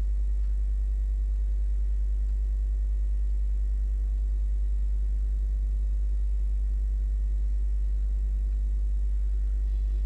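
Steady low electrical hum at mains frequency with faint overtones, unchanging throughout.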